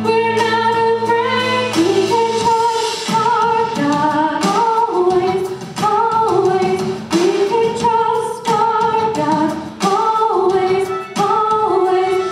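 A woman singing a slow song solo into a handheld microphone, holding long notes that slide between pitches. Low sustained accompaniment notes sound under the first two seconds.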